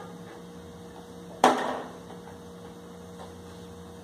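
A single knock about a second and a half in as small plastic balls are worked with bare feet around a plastic tub on a tiled floor, over a steady electrical hum.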